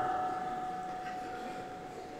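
A pause in a man's amplified talk in a large hall: the reverberation of his voice fades away, and a faint steady tone runs underneath until it stops near the end.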